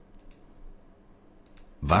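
A few faint computer mouse clicks on a quiet background, the last about one and a half seconds in, as the quiz moves on to the next question; a voice starts speaking right at the end.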